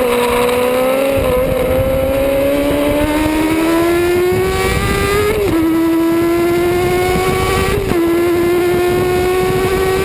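Onboard sound of a Yamaha road-racing motorcycle engine accelerating hard, its note climbing steadily with two quick upshifts, about five and a half seconds in and just before eight seconds. Wind rushes over the microphone underneath.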